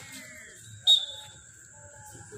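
A single short, sharp blast of a referee's whistle about a second in, with faint voices of players and onlookers around it.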